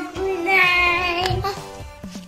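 Music with a child's high singing voice, holding long notes, which fades about a second and a half in.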